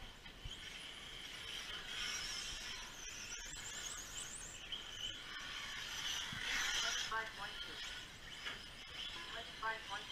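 Faint high-pitched whine of radio-controlled cars' motors driving a dirt track, rising and falling in pitch with the throttle, with distant voices about two-thirds of the way in and again near the end.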